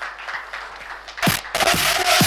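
Light, scattered applause; about a second and a quarter in, an electronic dance track starts with a deep falling beat and a held synth tone.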